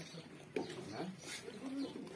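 Sardi sheep calling in a pen, one bleat starting sharply about half a second in and more wavering calls later, over low pigeon cooing.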